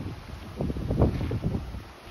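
Wind buffeting the microphone in uneven low rumbling gusts, strongest about halfway through.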